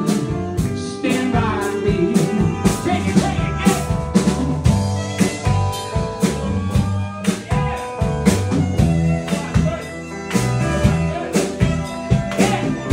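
Live band playing an instrumental passage: electric guitar over a bass line and a steady drum-kit beat.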